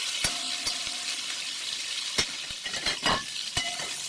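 Pork pieces sizzling steadily in sunflower oil in a kazan over maximum heat, while a metal slotted spoon stirs and turns them, scraping and clinking sharply against the pot several times.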